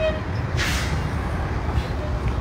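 Steady low rumble of outdoor street noise, with a brief hiss about half a second in.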